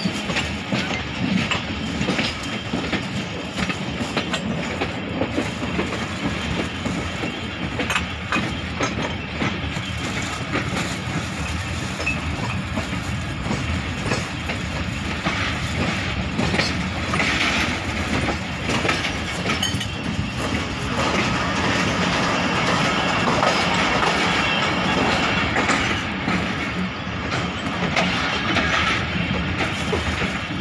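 Passenger train running at moderate speed, heard from an open window of the moving coach: a steady rumble of wheels on rails with repeated clicks over the track, growing a little louder past the middle.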